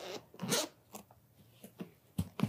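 Zipper on a fabric carrying case being unzipped: one short rasp about half a second in, then a few faint ticks.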